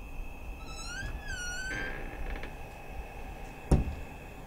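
A high, wavering meow-like call, rising then falling, about a second in. Then a rustle of bed linen being shaken out, and a single sharp thump near the end.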